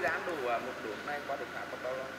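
Quiet, indistinct speech over a steady low background hum.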